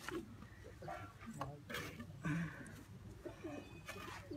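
Faint low cooing of pigeons in a loft, with a few soft rustles as a white pigeon is handled.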